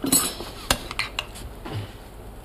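A metal utensil clinking and scraping against a pottery bowl and plate as food is dished out, with a few short sharp clinks.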